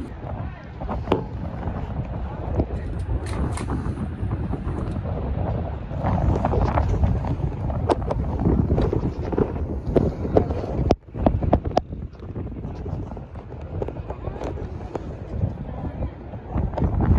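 Wind rumbling on the microphone, with indistinct voices of people nearby and a brief lull just before the last third.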